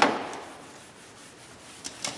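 Cloth rag rubbing across a whiteboard, wiping off a marker drawing: a swish at the start fading to a faint rub, with a light tap near the end.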